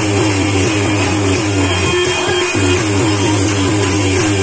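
Live Chhattisgarhi Karma folk music played through a loudspeaker: a quick, repeating melody of short notes over a steady low hum, with no singing.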